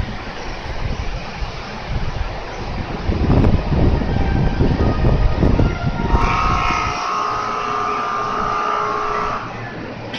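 A station platform departure bell rings as a steady electronic tone for about three seconds, starting about six seconds in and cutting off abruptly shortly before the end. Before it, only the low rumble of the platform with the stopped train.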